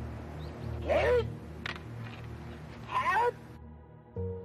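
Two loud kiai shouts from martial artists performing a Shindo Muso Ryu jodo kata, one about a second in and one about three seconds in, each rising then falling in pitch, with a single sharp knock between them. Under them is the steady low hum of an old film soundtrack, which cuts off suddenly near the end.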